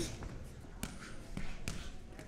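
Quiet room noise of a hall around a boxing ring, with three short thuds or knocks, the first a little under a second in and the other two close together near the end.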